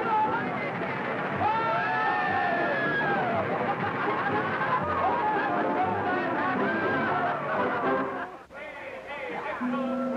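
Background music with people shrieking and exclaiming on a roller coaster ride, their voices swooping up and down in pitch; the sound dips briefly near the end.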